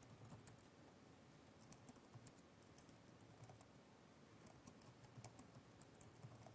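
Faint typing on a computer keyboard, in short runs of keystrokes with pauses between them.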